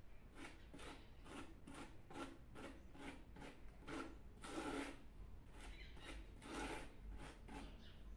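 Faint scraping and rubbing strokes, about two a second, as cement mortar and mesh are pressed by hand onto the inside walls of a ceramic-tile vase, with two longer scrapes about halfway and a little later.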